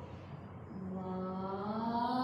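A woman's voice holding one long, drawn-out vowel in a chant-like way. It starts about a third of the way in at a steady pitch and begins to rise near the end.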